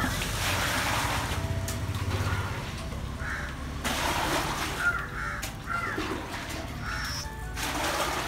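Water poured from a steel pot into a plastic bucket in three bursts, near the start, midway and near the end, with crows cawing now and then over background music.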